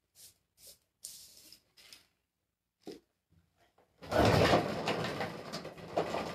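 Faint clicks of a lid being put on a paint jar. About four seconds in, a loud rough scraping rumble lasting about two seconds as the painted wooden dresser is shifted round on its work board to show its side.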